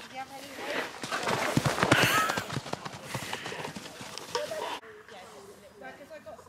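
Hoofbeats of horses moving about on grass turf, a quick run of thuds that is busiest around two seconds in and cuts off abruptly near five seconds.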